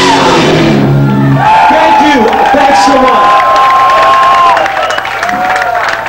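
A live rock band finishes a song, its last chord ringing out about a second and a half in, and the audience breaks into cheering and whoops that die down near the end.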